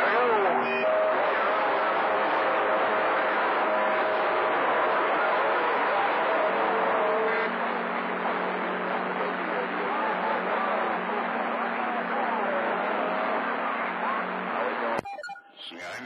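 CB radio receiving long-distance skip on channel 28: a thick bed of static with steady whistling tones and faint, garbled distant voices buried under it. The received audio cuts off suddenly near the end as the radio is keyed to transmit.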